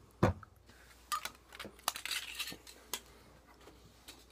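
Metal snuff-can lids clicking and clinking against each other as they are handled and set down, with one louder knock just after the start and a short rustle about two seconds in.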